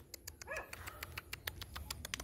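A dog barking faintly once, about half a second in, followed by a quick run of light clicks.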